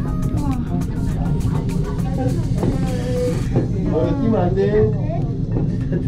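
Background music with a sharp, regular beat over a steady low hum from a moving cable car cabin. The music cuts off about halfway through, and voices talk over the hum.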